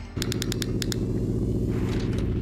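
Production-company logo sound effect: a steady low synthesized rumble, with a quick run of sharp clicks in its first second.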